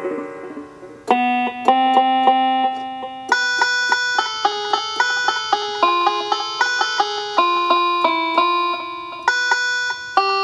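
Yamaha PSR-172 portable keyboard played by hand through its built-in speakers: a melody of plucked-sounding notes that each start sharply and fade quickly. The notes come thicker and higher from about three seconds in.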